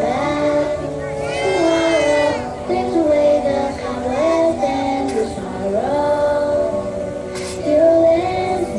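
A group of young children singing a song together, their voices holding notes and stepping between pitches.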